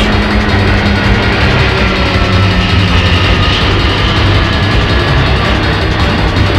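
A music track mixed with the engine noise of the Antonov An-225 Mriya's six turbofans as it climbs overhead, with faint tones that fall slowly in pitch.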